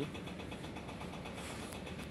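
Steady low background noise with a faint hum, without distinct events.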